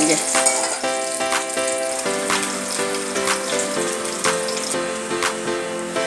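Fish head sizzling as it fries in hot oil in an aluminium kadai, heard under background music with a light beat about once a second.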